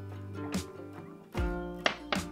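Background music on acoustic guitar, with a new chord struck a little past halfway.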